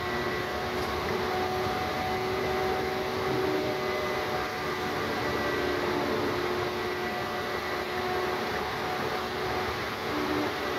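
Steady road and engine noise heard from inside a moving shuttle bus, with faint whining tones that come and go.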